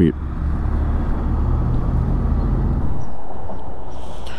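A Honda Rebel 1100's parallel-twin engine idling with a steady low note, which stops about three seconds in as the bike is shut off. A steady background rumble of noise carries on under it.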